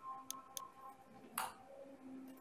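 Light clicks of a computer mouse and keyboard during code editing: two quick faint clicks, then a louder one about a second later.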